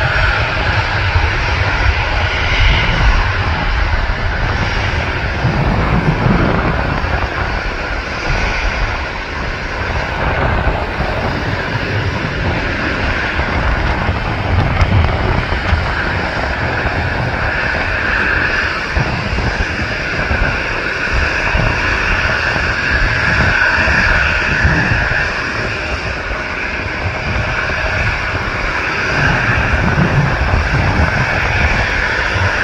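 Boeing 777-300ER's GE90-115B turbofans at takeoff thrust, heard from behind as it rolls down the runway: a steady, loud jet rumble with a deep low end.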